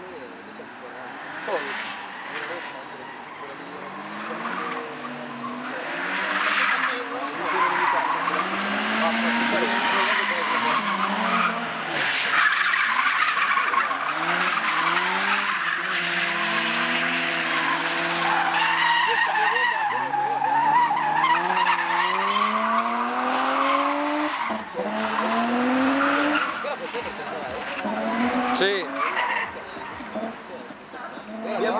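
A car being drifted: its engine is revved up and down again and again while the tyres squeal and skid through long slides. The squeal is loudest through the middle of the stretch.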